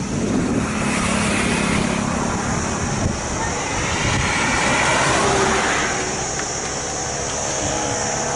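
Road traffic going by: a steady rush of passing vehicles, with one swelling to its loudest about halfway through and then fading.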